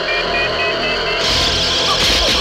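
Electronic horror-film score and sound effect: a steady drone under a pulsing tone that climbs slowly in pitch, then a little past halfway a loud rushing noise with a low rumble swells in.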